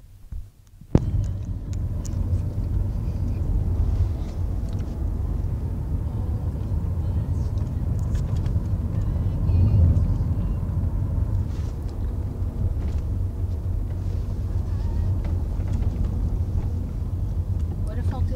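Car cabin noise while driving: a steady low rumble of engine and road, starting suddenly with a sharp click about a second in.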